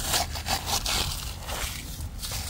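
Hand scraping and scooping loose EPS polystyrene bead cavity-wall insulation out of the wall, in an irregular run of rustling scrapes as the soaking-wet beads spill down.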